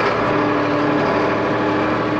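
Solis 50 compact tractor's diesel engine running steadily, heard from inside the cab.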